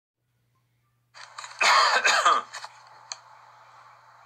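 A man coughs and clears his throat close to a phone microphone: two short loud bursts about one and a half seconds in, over a faint steady hum.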